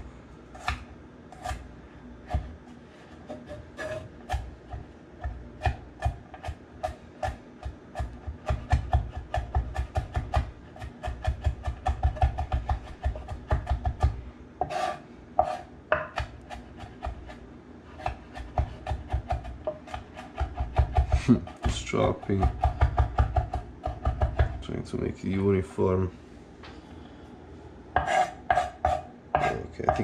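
A chef's knife chopping and mincing on a wooden cutting board: quick runs of sharp knife strokes, several a second, with short pauses between runs.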